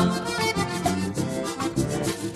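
Instrumental break in a gaúcho vaneira: an accordion (gaita) leads over a steady dance beat with bass.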